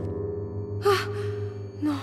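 A young woman gasps in shock about a second in, then breathes out a horrified "non" near the end, over a low sustained drone from the film's score.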